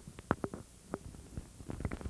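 Handling noise from a small corded microphone being fiddled with in the hand: a scatter of light clicks and bumps.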